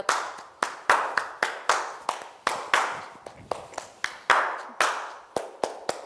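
Hand claps in a steady rhythm, about four a second, each ringing briefly in the room.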